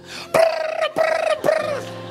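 A man's voice imitating the whistles that a congregation blows to say Amen: three short, high, held calls in quick succession.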